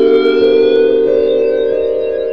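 Dark ambient music: a sustained synthesizer chord, its high tones slowly gliding in pitch while new held notes enter about half a second and a second in.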